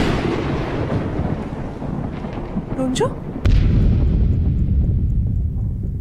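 Dramatic boom sound effect for a shocked reaction shot: a sudden crash that dies away in a long rumbling tail, then a second deep rumble rising about three and a half seconds in and holding.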